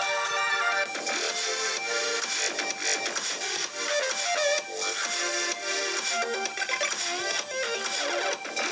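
A music track played at maximum volume through the Alcatel One Touch Idol 3 smartphone's front-facing stereo speakers, playing cleanly without rattling.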